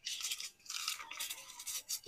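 Faint, scratchy papery rustling in several short spells: paper banknotes being handled in the fingers.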